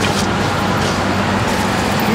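A steady low mechanical hum, like a running motor, under an even wash of background noise.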